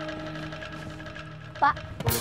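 Background score: a held chord from a string music cue sustains and fades, with a single short spoken word near the end.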